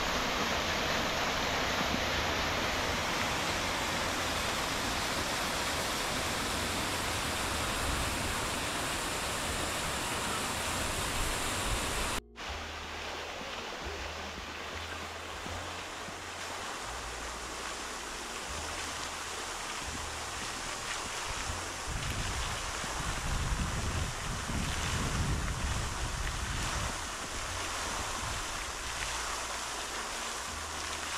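Fountain jets of the Grand Cascade splashing, a steady rushing of falling water. After a cut about 12 seconds in, a single fountain jet splashing into its basin, quieter, with wind buffeting the microphone.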